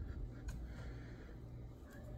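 Quiet handling sounds: a dish soap bottle set down with a light knock about half a second in, then soft rubbing of a wet shirt between hands.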